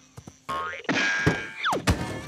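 Cartoon sound effects over music: a ringing, springy boing, then a quick steeply falling whistle that ends in a sharp thump as a character drops into a car seat.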